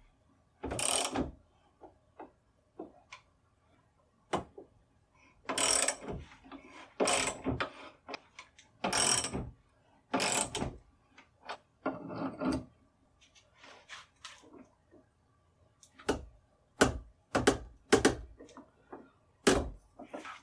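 Socket ratchet wrench clicking in short runs as the nuts on the clamp bolts of a barrel-holding block are loosened, with sharp metal clicks and clinks of the tools and nuts near the end.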